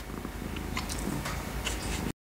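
A domestic cat purring, a low steady rumble.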